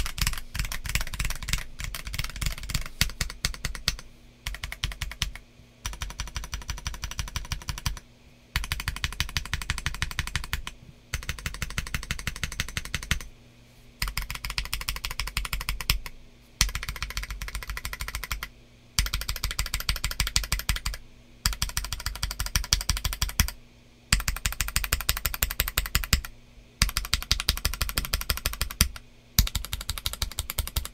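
Feker JJK21 gasket-mount number pad with a PC plate, lubed Akko Sponge switches and MT3 Camillo keycaps, typed on in quick runs of keystrokes. Each run lasts about two seconds, with a short pause before the next, about a dozen runs in all.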